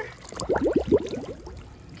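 Plastic squirt gun held underwater to fill: air gurgles and bubbles out of its reservoir as water flows in, a short burst of bubbling about half a second in that dies away after a second.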